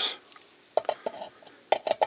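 Hand nibbling tool cutting into a thin-gauge aluminium box: short metallic clicks and clinks as the handles are squeezed, about a second in and again near the end.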